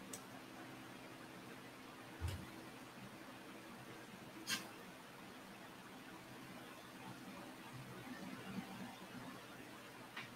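Quiet room tone with a faint steady hum, broken by two small clicks from handling makeup (a mascara tube and compact mirror): a soft knock about two seconds in and a sharper click a couple of seconds later.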